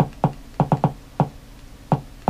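Amazon Fire TV Stick remote's navigation button clicked repeatedly, about seven short sharp clicks at uneven spacing, some in quick pairs.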